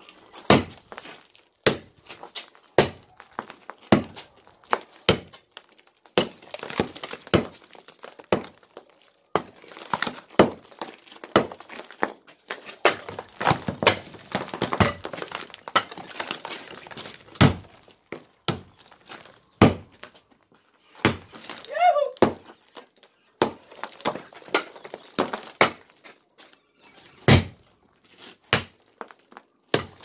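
Sledgehammer blows striking a plastered concrete-block wall, one every second or two, each knocking loose chunks of hard cement render and block that rattle and crumble down. The render is strong and the wall breaks slowly.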